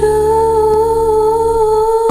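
Background song: a singer holds one long, steady hummed note over soft accompaniment.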